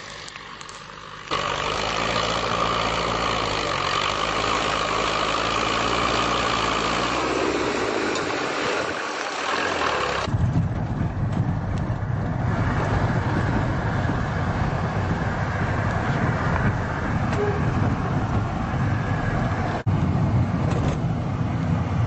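A vehicle engine running, its pitch shifting up and down. About ten seconds in it cuts abruptly to the louder, steady rumble of a car driving, heard from inside the cabin.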